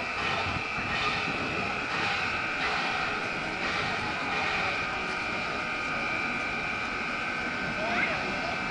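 Diesel locomotive engine running as the train rolls slowly in, with a steady high whine over the engine noise.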